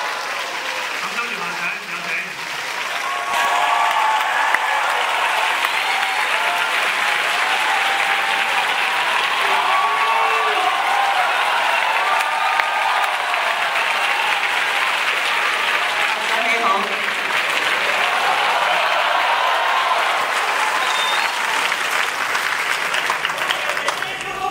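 A large audience applauding, the clapping swelling about three seconds in and then holding steady, with voices from the crowd mixed in.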